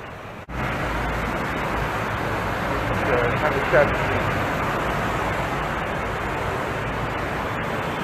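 Steady city traffic noise from a nearby road, starting abruptly about half a second in and holding even throughout.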